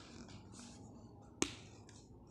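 Faint scratching of a ballpoint pen on notebook paper in short strokes, with one sharp click about one and a half seconds in.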